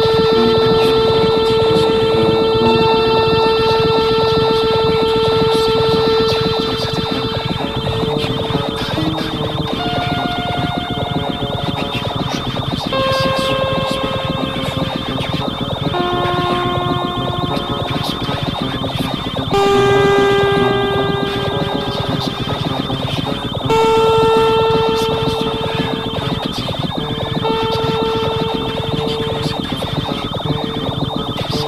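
Improvised ambient electronic music: held electronic tones, sometimes one alone and sometimes several together, change pitch every few seconds over a dense, fast clicking texture. New tones enter louder about two-thirds of the way through and again near the end.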